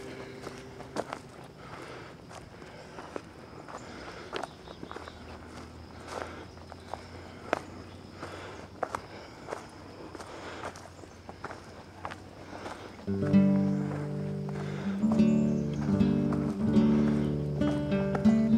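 Footsteps on a leaf-covered dirt forest path, one step about every three quarters of a second. About thirteen seconds in, acoustic guitar music comes in and becomes the loudest sound.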